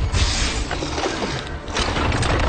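Trailer sound design for a robot moving: mechanical whirring and ratcheting after a heavy hit at the start, with another sharp hit near the end, over music.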